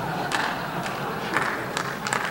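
Conference audience reacting: a low crowd murmur with a few scattered claps.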